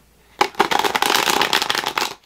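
Tarot cards being shuffled: a fast, dense run of card clicks that starts about half a second in.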